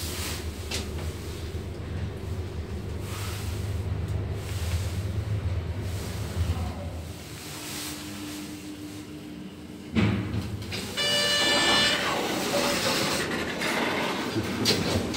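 1992 Semag traction elevator car travelling between floors: a steady low rumble of the ride with a steady hum as it slows, a sharp clunk about ten seconds in as the car stops, then a steady high tone for about two seconds as the doors open.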